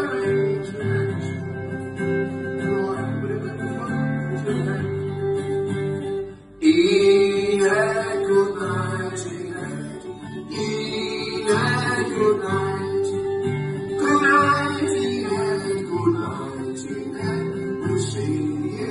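Two acoustic guitars strummed together in a steady chord accompaniment, live on stage; the sound drops out briefly about six seconds in and comes straight back.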